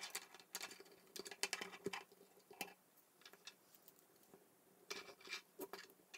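Faint clicks and rattles of K'NEX plastic rods and connectors being handled and snapped together as a wheel assembly is fitted onto a frame, in a cluster over the first two seconds or so and another near the end.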